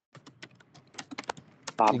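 Computer keyboard typing: a quick, irregular run of key clicks, then speech begins near the end.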